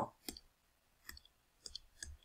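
A few faint, scattered clicks, short and sharp, from computer input while the digital whiteboard view is moved.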